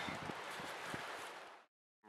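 Faint, steady hiss of wind with a few light rustles, fading away and cutting off suddenly near the end.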